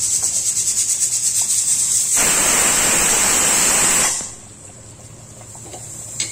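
Thick tomato gravy simmering in a pan, sizzling with a fast, fine crackle. About two seconds in a louder rushing hiss joins it. About two seconds later the sound cuts off abruptly to a much quieter level.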